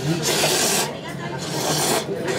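A person slurping ramen noodles from a bowl: two long slurps, the second running about a second in until the end.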